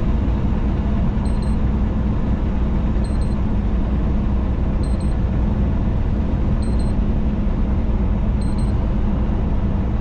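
Semi truck cab at highway speed: a steady low rumble of engine and road noise with no change throughout.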